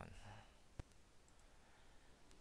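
A single computer mouse click, sharp and short, about a second in, against near silence.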